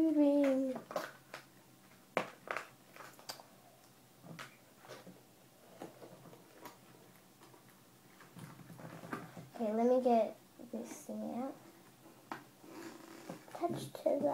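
A girl's voice finishing a sung note, then a few sharp clicks and taps from handling the mood ring's packaging as she tries to work the ring free. About ten seconds in comes a short wordless sung phrase.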